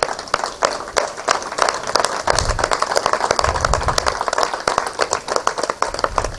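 Audience and people on stage applauding, many hands clapping in a dense, steady patter.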